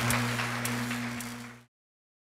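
Audience applause over a steady low hum, fading out and cutting to silence a little before the end.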